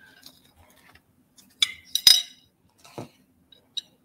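Glass beads strung on beading wire clinking against a pressed-glass dish as the strands are moved around in it: a few sharp clinks, the loudest about halfway through.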